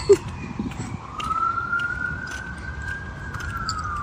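A siren wailing in the distance, its pitch rising slowly over about two seconds and then falling away.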